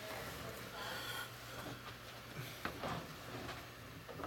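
Hot-water circulator pump of a radiant floor heating system running with a faint, steady low hum: very quiet.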